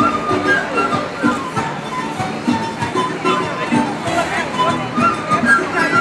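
Music from a Bolivian or Peruvian folk group playing in the open, a high stepping melody line over the chatter of a crowd.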